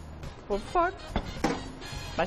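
A short spoken word over faint background music, with a single sharp knock about a second in as a metal baking tray is set down on the counter.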